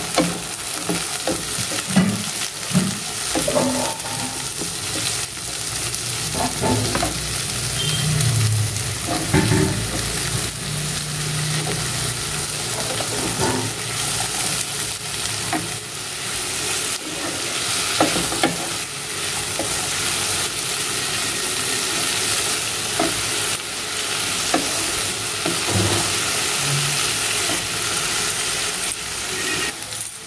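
Chopped vegetables frying in oil in a nonstick wok, with a steady sizzle. A wooden spatula stirs them, scraping and knocking against the pan at irregular moments throughout.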